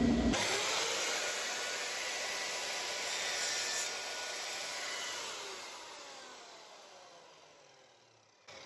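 Scheppach miter saw cutting a length of painted trim. The sound starts abruptly, then the blade spins down with a falling whine that fades away over several seconds.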